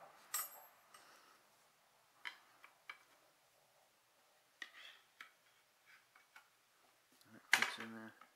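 Scattered light knocks and clicks as wooden stair panels, dowels and small metal hardware are handled and fitted together during assembly, with the sharpest knock near the end alongside a brief vocal sound.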